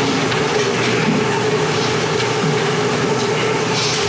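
A steady hum with a constant tone and even hiss, without speech: continuous room or equipment noise.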